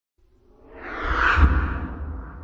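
A whoosh sound effect for an animated logo intro: a rushing swell that builds over about a second, with a deep low rumble underneath, loudest about a second and a half in, then fading away.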